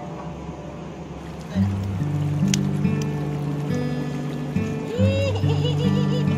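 Background music with slow, held notes and a steady low bass line, coming in about a second and a half in.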